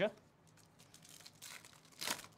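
Foil wrapper of a Topps Big League baseball card pack crinkling faintly as it is handled and torn open, a little louder towards the end.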